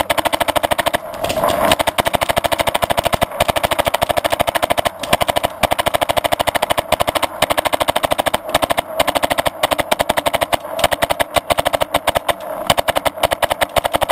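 Several paintball markers firing at once in rapid, nearly continuous volleys of sharp pops, many shots a second, with only brief pauses.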